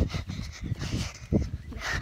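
Low wind and handling rumble on a handheld phone microphone, with two dull thumps about a second and a half apart.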